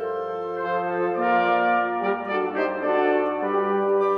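Wind octet of flute, clarinet, two bassoons, two trumpets and two trombones playing sustained chords, with the trumpets and trombones most prominent. The chords change every half-second or so and grow louder about a second in.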